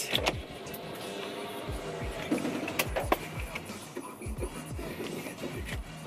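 Background music with a deep bass beat repeating a few times a second, at a low level.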